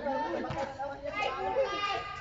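Several people's voices calling out and talking over one another across an open court, with one short knock about half a second in.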